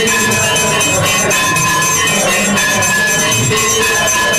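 Temple aarti accompaniment of brass bells and cymbals clanging rapidly and without a break, several bell tones ringing on through the dense, steady clatter.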